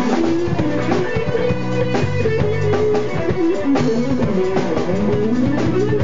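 A rock band playing an instrumental groove live on drum kit, electric bass, electric guitar and keyboard. The drums keep a steady beat under a running bass line, and a lead melody slides up and down in pitch.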